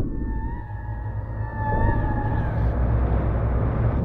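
Dark ambient soundtrack music: a steady low drone under a wavering, whale-song-like high tone that slides in pitch and fades out about two and a half seconds in.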